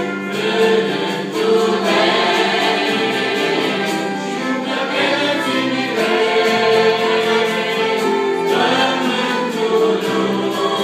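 A mixed choir of young women and men sings a Christian hymn in Romanian, the voices holding long notes together throughout.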